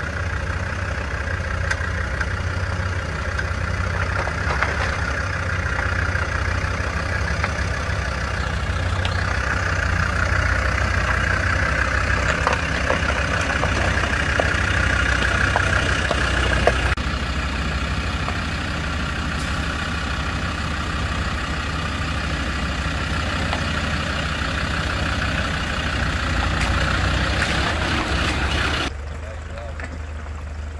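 Land Rover Discovery's engine running steadily at low revs as the 4x4 crawls over a rocky off-road track, with occasional sharp knocks. The sound drops abruptly near the end.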